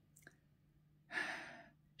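A woman's single audible breath about a second in, taken in a pause between spoken phrases, with a faint click just before it; otherwise quiet room tone.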